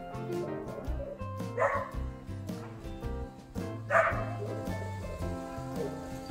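A dog giving two short barks, one about a second and a half in and one at about four seconds, over background music with a steady beat.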